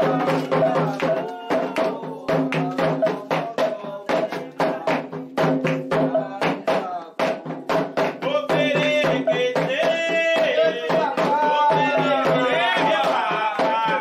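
Candomblé atabaque drums playing a quick, driving rhythm of dense strokes for the orixá's dance, the rum or lead drum's toque for Oxalá. Voices join in singing from about eight seconds in.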